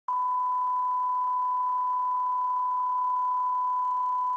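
Broadcast line-up test tone played with colour bars: a single steady pure tone at one thousand hertz, starting just after the beginning and holding at one level throughout.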